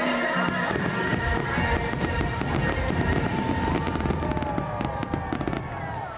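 Fireworks going off in rapid succession over the show's music from loudspeakers; the bursts thin out and the level drops near the end.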